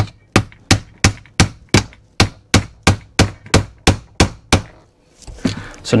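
Small mallet tapping a carriage bolt through an ABS plastic closet flange, about fifteen quick, even taps at roughly three a second, driving the bolt's square head into the plastic; the taps stop about four and a half seconds in.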